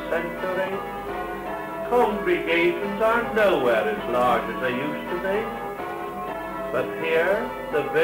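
Church bells being rung in changes, several tuned bells striking in overlapping, continuous rounds.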